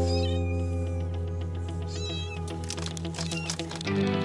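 Kittens mewing in short, high-pitched cries, once near the start and again about two seconds in, over background music with long held notes.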